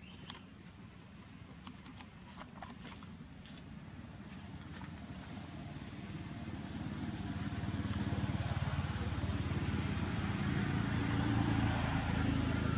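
An engine running with a steady low hum, growing louder over the first eight seconds and then holding steady. A few light clicks come in the first few seconds.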